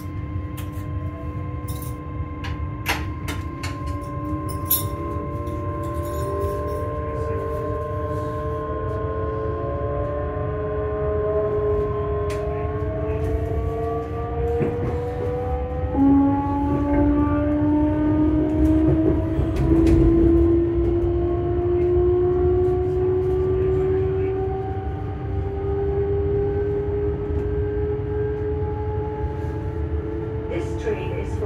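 Electric passenger train heard from inside the carriage while it accelerates: a steady low rumble of wheels on track under the whine of the traction motors. The whine starts as a few steady tones. From about twelve seconds in, several tones climb in pitch, and a louder whine cuts in about halfway and keeps rising.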